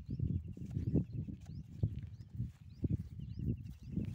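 Irregular low rumbling and dull knocks, with small birds chirping overhead and a rapid trill heard twice, early on and again near the end.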